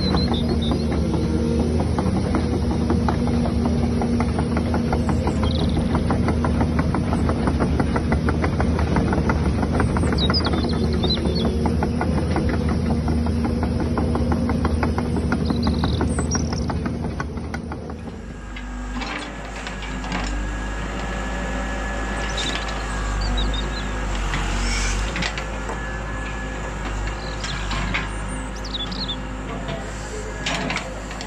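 A Huina RC excavator's electric motors and tracks running as it crawls over rubble: a loud, rapid ticking whir over a steady hum. About eighteen seconds in it stops and the sound drops to a quieter, steadier hum.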